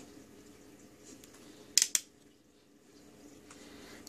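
Two quick, sharp clicks about two seconds in, from handling the multimeter and putting its test probe to the voltage standard's terminal, over a quiet room with a faint steady hum.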